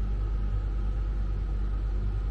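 Steady low rumble and hum of an idling vehicle engine mixed with a Truma Aventa air conditioner running on cold.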